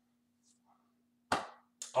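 A man's single short cough into his hand about a second and a half in, followed by a quick breath in. A faint steady hum fills the quiet before it.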